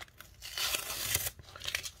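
Paper packaging and painter's tape being torn, peeled and crinkled by hand: a scratchy rustling and tearing that starts about half a second in and lasts about a second and a half.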